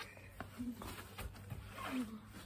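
Quiet stretch with a few soft knocks of a football being played with the feet on grass, and a brief voice sound near the end.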